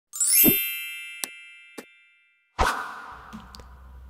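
Logo intro sound effect: a quick upward sweep into a bright ringing chime with a low thud under it, two short ticks as it fades, then a second hit about two and a half seconds in that rings out over a faint low hum.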